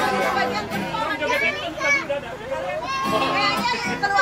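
A group of children's voices chattering and calling out over one another. Low held notes from an electronic keyboard sound under the voices during the first second and again about three seconds in.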